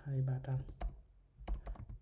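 Computer keyboard typing: a quick run of several keystrokes about one and a half seconds in, with a man's voice talking over the start.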